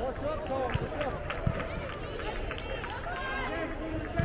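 Overlapping, indistinct voices of players and spectators calling out across an indoor soccer field, with a couple of short sharp knocks about one and one and a half seconds in.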